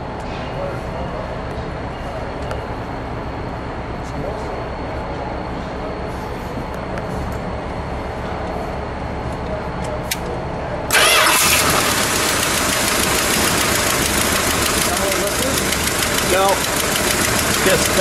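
The 440 cubic-inch V8 of a 1970 Plymouth Superbird running with a steady rumble. About eleven seconds in, the engine sound abruptly turns louder and brighter.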